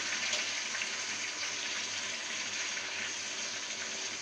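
Raw meat pieces sizzling in hot oil among browned fried onions in a cooking pot, a steady frying hiss that slowly eases as the meat cools the oil.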